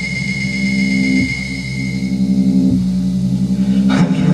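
Electronic drone from a tabletop rig of effects pedals and mixer: a steady, buzzing low tone of several pitches that shifts about a second in and again near three seconds, a high thin tone fading out about halfway. It grows louder in the second half and ends in a sudden sweeping burst.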